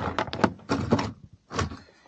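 A quick run of knocks and clatter lasting about a second, then one more knock about one and a half seconds in, from hard objects being handled at an open plastic tool case.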